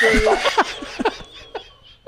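People laughing hard: a high rising squeal of laughter at the start, then a string of short breathy laughs that fade away near the end.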